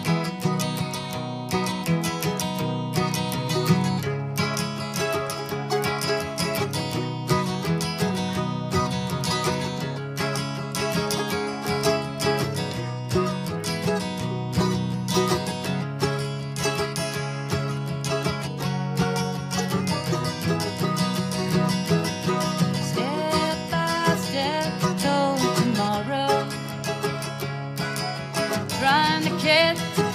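Acoustic guitar strummed in a steady rhythm as the instrumental intro to a folk song. A bending melody line joins about twenty seconds in.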